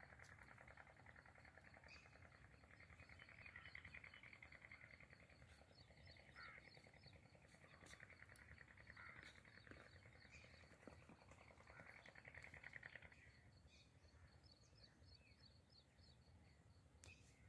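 Faint outdoor ambience: a steady, rapidly pulsing animal chorus with scattered bird chirps, easing off near the end.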